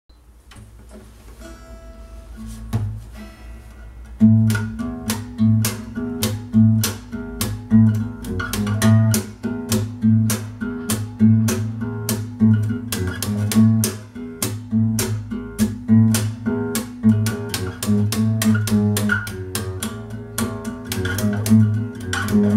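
Steel-string acoustic guitar played slap-bass style: thumb-slapped low notes and sharp popped strikes in a steady, rhythmic groove. It opens softly with a few ringing notes, and the full groove kicks in about four seconds in.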